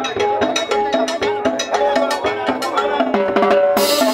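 Live band playing fast dance music: a Maxtone drum kit and a pair of timbales keep a steady, busy beat under a pitched melody line, with a bright crash near the end.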